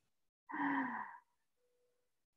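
A person's short breathy sigh, lasting under a second, a little way in.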